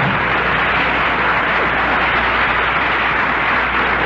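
Studio audience applauding, a steady wash of clapping after a comedy punchline on a 1941 radio broadcast recording.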